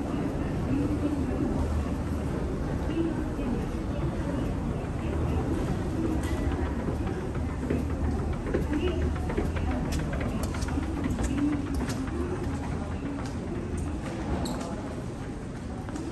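Escalator running with a steady low rumble, under indistinct voices in a large terminal hall. Scattered light clicks and footsteps come in the middle.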